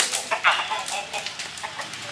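A chicken clucking and squawking, loudest about half a second in, with short knocks and rattles from a large woven bamboo cage being tipped and moved over it.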